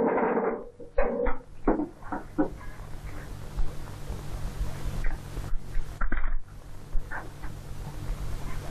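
A few short knocks and scrapes in the first two and a half seconds, then the steady low hum and hiss of an old film soundtrack with a few faint knocks.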